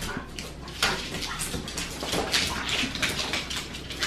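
A French bulldog puppy scrabbling and jumping for a plush toy on a wooden floor: a rapid, irregular run of claw clicks and scratches.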